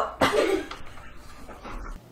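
A single short cough-like burst from a person about a quarter second in, trailing off within about half a second.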